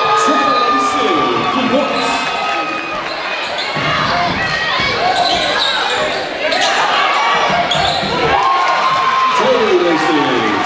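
Live gym sound of a basketball game: a ball dribbling on the hardwood floor among shouting voices and high squeaks, echoing in a large hall.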